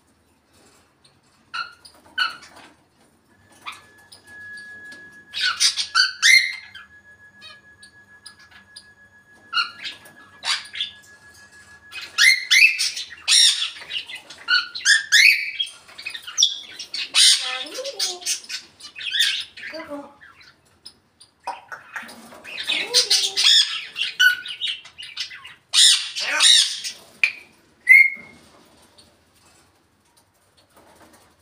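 African grey parrot calling: a run of squawks, chirps and whistles, some gliding up and down in pitch. A long, steady high tone is held for several seconds near the start.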